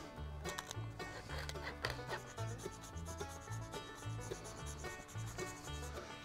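A hand pepper mill grinding white pepper, then a nutmeg rubbed on a fine rasp grater: dry grinding and rasping, over quiet background music with a repeating bass line.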